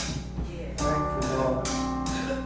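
Church band music: held keyboard chords with drums and cymbal strokes.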